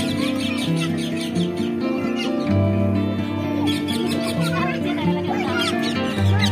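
Background music of long held notes, with bird chirps and twitters over it in short runs about a second in and again past the middle.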